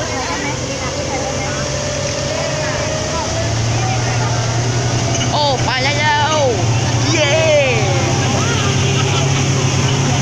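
Speedboat engine running at speed, a steady low drone that grows louder a few seconds in, with water rushing past the hull. Voices talk over it near the middle.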